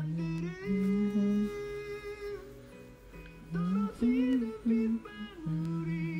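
A song playing: a singing voice carries a slow melody of long held notes that glide from one to the next.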